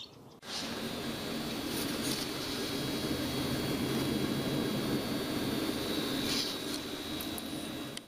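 Steady low mechanical hum of indoor room noise, such as ventilation or an appliance, with a faint high steady whine and a couple of faint ticks.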